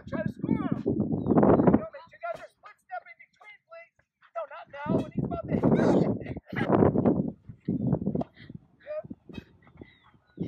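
Voices talking and calling out in bursts, with a lull about two to four seconds in.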